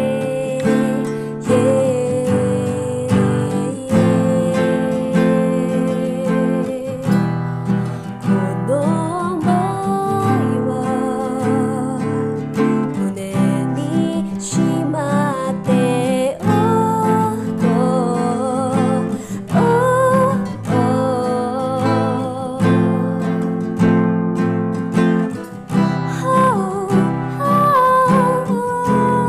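Acoustic guitar strummed and picked under a sung melody held with vibrato: a solo guitar-and-voice song cover.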